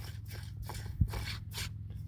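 Faint scraping and ticking of a plastic compression nut being hand-tightened onto an HDPE pipe fitting, with a single low thump about a second in, over a steady low hum.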